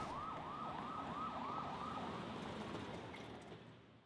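Emergency vehicle siren on a fast yelp, its pitch sweeping up and down about three times a second, fading away near the end.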